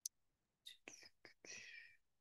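Near silence, broken by a few faint, breathy, whisper-like voice sounds from about two-thirds of a second in.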